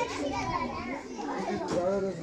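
Several voices overlapping in a continuous, busy chatter with no pauses.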